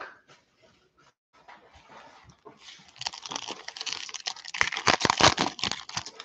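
Foil trading-card pack being torn open and its wrapper crinkled. The first couple of seconds are quiet, then dense crinkling and clicks fill the last three seconds.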